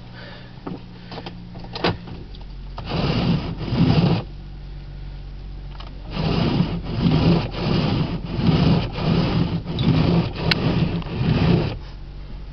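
Windshield wipers scraping across an icy, slushy windshield: two strokes about three seconds in, then a steady run of strokes about twice a second from six seconds on. The Toyota's engine idles underneath.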